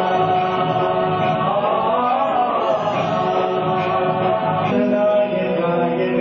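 Background music of voices chanting in chorus on long held notes, shifting to new notes near the end.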